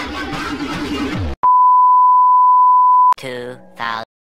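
A loud, steady single-pitch beep sound effect edited in, lasting nearly two seconds. It follows dance music that cuts off about a second in, and is followed by a short voice-like clip with falling pitch near the end.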